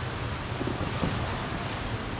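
Steady, even outdoor hiss with a low steady hum underneath.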